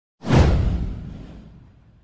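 A whoosh sound effect with a deep bass boom, starting suddenly about a quarter of a second in, sweeping downward in pitch and fading away over about a second and a half.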